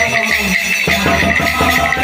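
Devotional kirtan music through a microphone and loudspeaker: a wavering melody over a steady beat of hand percussion.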